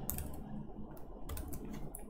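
Pen stylus tapping and scratching on a tablet while handwriting numbers, with a few light, sharp clicks.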